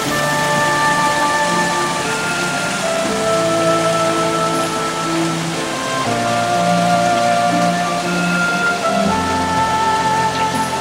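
Slow background music of long held notes, the chord shifting every few seconds, over a steady hiss.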